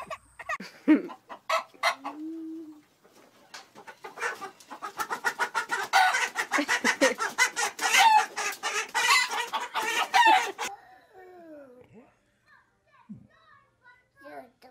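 A chicken squawking and clucking rapidly and loudly as a child grabs and holds it: the bird's alarm at being handled. The squawking begins about four seconds in and breaks off suddenly near eleven seconds.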